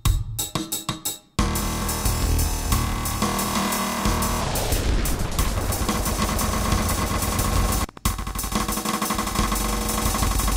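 DM1 drum machine beat run through VirSyn Tap Delay's tape-style multi-tap delay. It starts as separate drum hits, then after about a second and a half becomes a dense wash of repeating echoes. A falling pitch sweep runs about halfway through, and a brief dropout comes near the end.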